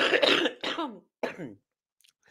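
A person coughing and clearing their throat: one harsh cough at the start, then two shorter throat-clearing sounds that drop in pitch.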